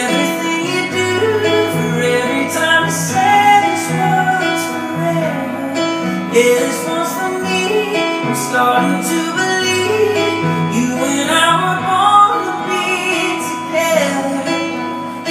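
Live acoustic guitar and keyboard piano playing together through a vocal break in a song, with sustained chords over held bass notes. A wordless voice glides over the music a few seconds in and again near the end.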